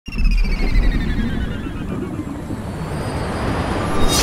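Channel-intro sound effect: a low rumble under a high tone that glides steadily downward over about three seconds, swelling slightly near the end.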